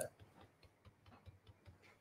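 Near silence, with a few faint, light ticks.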